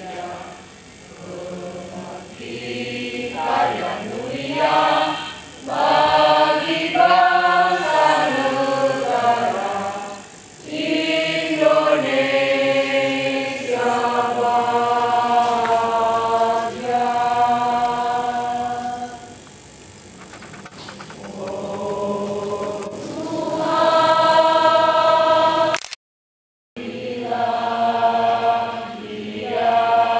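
A choir of many voices singing a slow song in long, held notes, with short breaks between phrases. The sound cuts out completely for under a second near the end.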